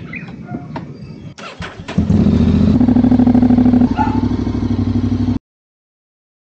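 Honda X-ADV 750's parallel-twin engine being started: a few small clicks, a brief crank about a second and a half in, then it catches about two seconds in and runs steadily at idle. It cuts off suddenly near the end.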